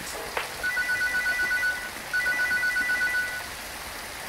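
A phone ringing: two trilling bursts of about a second each with a short gap, signalling an incoming call, over steady rain.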